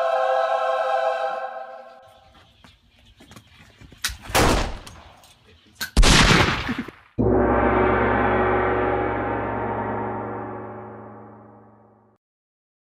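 A held pitched tone fades over the first two seconds. Two loud, noisy crashes follow about four and six seconds in. Then a gong is struck about seven seconds in and rings, slowly dying away.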